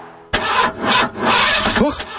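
A car's starter motor cranking the engine in several grinding bursts, starting about a third of a second in: the engine fails to catch and will not start.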